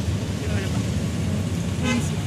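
Steady low rumble of road traffic, with two short pitched sounds, one about half a second in and one near the end.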